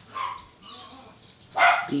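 Two short animal calls: a brief one just after the start and a louder one near the end.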